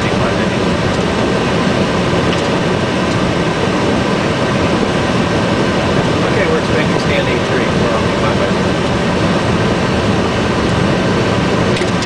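Steady flight deck noise of a Boeing 757 taxiing: the engines at idle and the cockpit air conditioning make a loud, even noise with a faint steady whine running through it.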